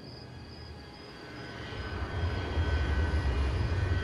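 A low rumble that swells up from about halfway through, with faint, steady, high thin tones above it.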